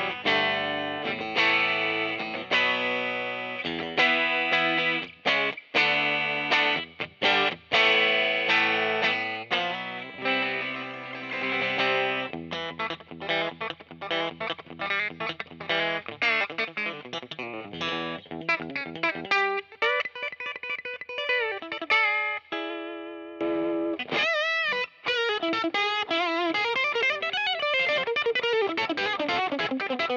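Fender Custom Shop 1960 Stratocaster Relic electric guitar played through an amp on its bridge pickup (position one of the five-way switch). It plays struck chords and quick single-note runs, and near the end it holds wavering notes with heavy vibrato.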